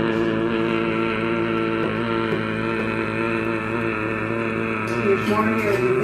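A steady chord of several tones, held unbroken for about six seconds, wavering slightly and then stopping near the end.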